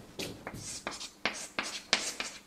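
Chalk writing on a blackboard: a quick run of short scratching strokes and taps, about six in two seconds.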